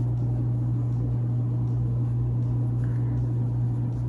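A steady low hum with faint background noise, unchanging throughout.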